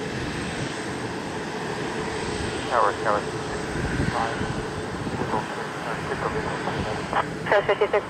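Airbus A340-600 jet engines running steadily as the airliner taxis. Short snatches of air traffic control radio voices come about three seconds in and again near the end.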